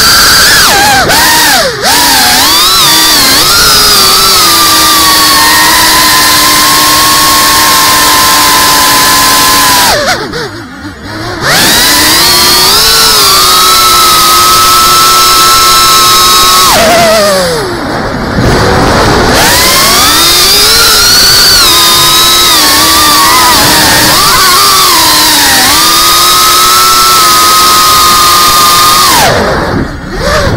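FPV quadcopter's electric motors and propellers whining loudly, the pitch rising and falling with the throttle and held steady for a few seconds at a time. The whine dips sharply twice, about a third and about two-thirds of the way through, as the throttle is cut back.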